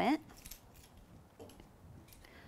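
Faint handling sounds after a woman's speech cuts off: a few soft clicks and rustles as a thin metal cutting die, its cleaning brush and cut card pieces are handled on a craft table.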